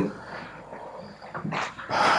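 A pause in a man's speech: quiet room tone, then faint short vocal sounds, a breath or hesitation, in the last half second.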